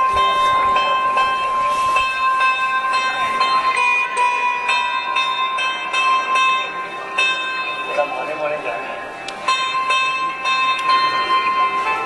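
Sarod strings being plucked in quick repeated strokes over a steady high held tone that breaks off briefly near the end and resumes.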